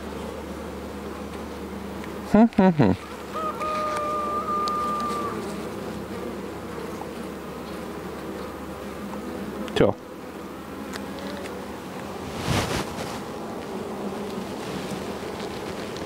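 Steady hum of a honeybee colony from a comb frame crowded with bees held up out of the hive. A brief loud sound with a quickly falling pitch about two and a half seconds in.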